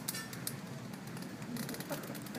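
Faint, light metallic clinks and ticks, a cluster just after the start and another near the end.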